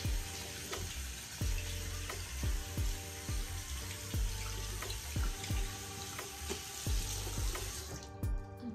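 Water running from a tap into a sink as hands are washed, a steady hiss that cuts off at the very end. Background music with a steady beat plays underneath.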